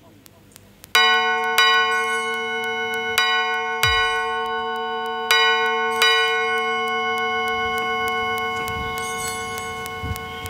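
Church bell rung at the elevation of the chalice at the consecration. It is struck in three pairs of strokes about two seconds apart, beginning about a second in, and each stroke rings on in a long, slowly fading tone.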